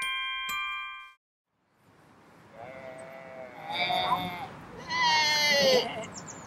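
A few glockenspiel-like chime notes ring out and stop about a second in. After a short silence come two long, wavering sheep bleats, the second louder, voiced by actors playing sheep.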